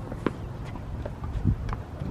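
Tennis being played on an outdoor hard court: a few sharp, separate knocks of racket strikes and ball bounces, the clearest about a quarter second in, with footsteps on the court.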